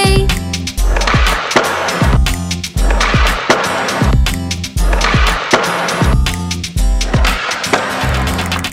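Skateboard wheels rolling on a ramp as a cartoon sound effect, the rush swelling and fading several times. It plays over an instrumental children's song with a steady beat.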